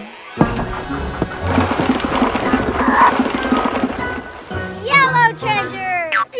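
Animated cartoon soundtrack: background music under a rattling, rumbling sound effect of a wooden barrel rocking and rolling for about four seconds, followed by a few short, high gliding voice sounds near the end.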